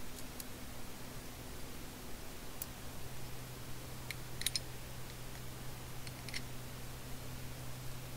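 Light metallic clicks and clinks of a 3/8-inch steel quick link and climbing pulley being handled and coupled to a webbing sling: a single click near the start, one at about two and a half seconds, a quick cluster around four and a half seconds and another around six seconds. A steady low hum runs underneath.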